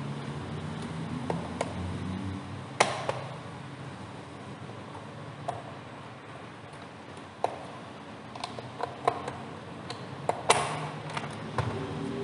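Plastic latches of a car instrument cluster clicking and snapping as they are pried free by hand to release the clear acrylic lens cover. The clicks are sharp and scattered, the loudest about three seconds in and again about ten and a half seconds in.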